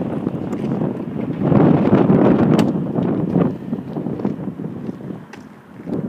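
Wind buffeting the microphone, a rough low rumble that swells loudest in the middle and eases off near the end, with a few faint clicks.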